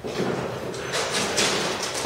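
A dog running through a fabric agility tunnel: loud rustling and scraping of the tunnel cloth that starts suddenly, with several stronger swishes in the second half.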